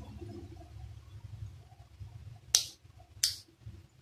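Two sharp clicks about two and a half and three seconds in, from handling the small parts of an electric kettle's auto-off switch while its rusty contacts are cleaned and adjusted, over faint handling noise.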